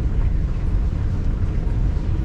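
Steady low rumble of an underground MRT station passage heard from a moving walkway, with no distinct events.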